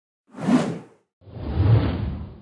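Two whoosh sound effects accompanying an animated logo, each swelling up and fading away; the second begins about a second after the first and sits lower in pitch.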